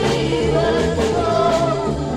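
1960s beat-band recording from vinyl: the band playing, with voices singing over it.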